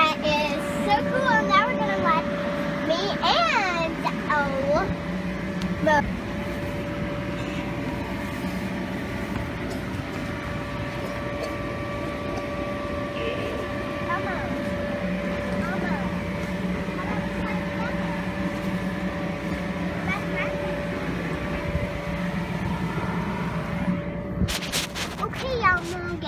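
Electric blower of an inflatable bounce house running, a steady hum with a rush of air. High gliding vocal squeals sound in the first few seconds, and a few sharp knocks come near the end.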